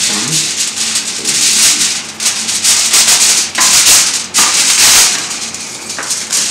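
Sheets of aluminium foil crinkling and rustling as they are handled and smoothed flat on a table, in loud, uneven surges.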